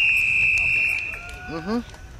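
Referee's whistle: one long, steady, high blast of about a second and a half, fading near its end.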